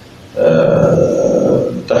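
A man's drawn-out hesitation sound: one held vowel, like a long "ehh", starting about half a second in and lasting about a second and a half.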